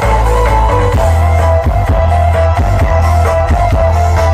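Music played loud through a large outdoor system of stacked loudspeaker cabinets being tested, with a heavy, steady bass under a held melody line.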